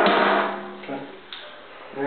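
A cabinet drawer being pushed shut: a single sharp clunk right at the start that dies away quickly.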